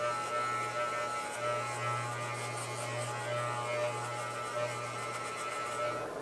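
Wahl Color Pro electric hair clippers running with no guard, a steady buzz as they cut the hair down close to the scalp.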